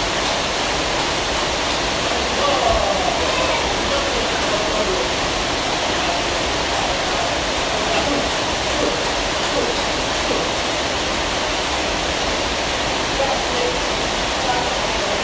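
A steady, loud rushing hiss with faint voices underneath.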